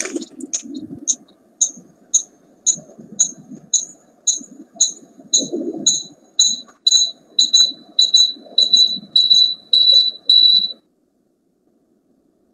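A run of short high-pitched beeps, about two a second, that grow longer and closer together toward the end and stop suddenly, over a faint muffled background.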